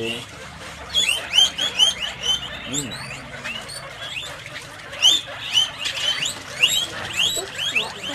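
Guinea pigs wheeking: many short, rising squeaks repeated in quick runs.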